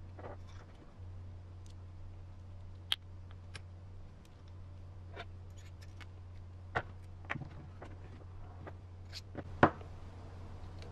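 Scattered light clicks and taps of a brass steering knuckle and small parts being handled and fitted to an RC crawler's front axle, the sharpest click about nine and a half seconds in, over a steady low hum.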